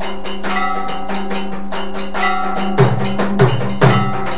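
Temple aarti bells and percussion struck in a fast, even beat with sustained metallic ringing. Three louder, deeper strikes come near the end.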